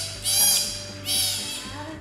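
Sea otter pup squealing: about three high-pitched calls in quick succession, each falling slightly in pitch.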